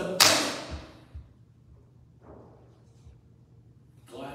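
A single sharp, loud bang that rings out briefly in a large room, followed by two soft low thumps about half a second apart.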